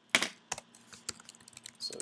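Typing on a computer keyboard: a loud keystroke just after the start, then a run of lighter key clicks.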